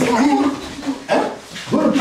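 A man shouting: three short, loud shouts.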